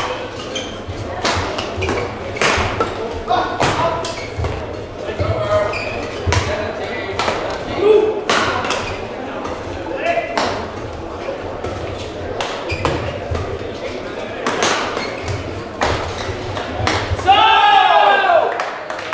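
Badminton rackets striking a shuttlecock again and again in a rally, each hit a short sharp crack echoing in a large sports hall. Near the end a voice calls out.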